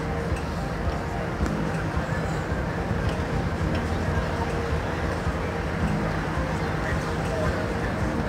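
Busy city-centre street ambience: a steady rumble of traffic with indistinct voices of passers-by.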